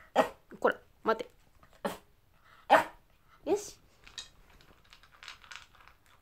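Toy poodle giving about six short, sharp barks over the first four seconds, demanding its dinner while being held back on a wait command. Faint clicking near the end as it starts eating from its bowl.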